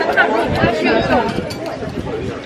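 Women's voices in overlapping chatter at a dining table.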